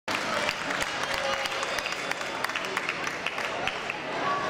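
Scattered hand clapping from a small crowd, with voices chattering underneath.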